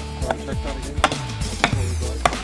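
A sledgehammer strikes the top of a wooden 2x4 stake, driving it into the ground, about three blows in quick succession. Background music plays underneath.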